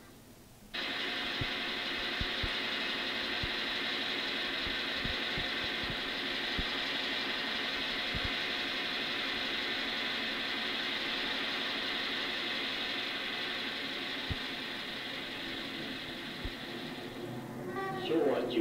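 A steady, loud rushing noise from a film clip's soundtrack played over the room's speakers. It cuts in suddenly about a second in and eases off near the end, with a few faint low thumps scattered through it.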